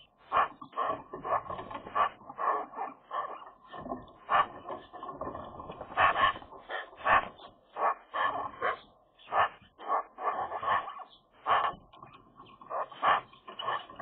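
Eurasian magpies (Pica pica) keeping up a stream of short, soft calls to one another at the nest, the calls coming one or two a second and bunching more closely in places. The calls are social chatter rather than aggression.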